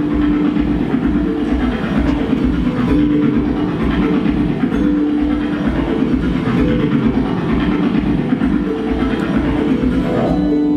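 Background music: a steady low pulse of about four beats a second under long held notes that come and go.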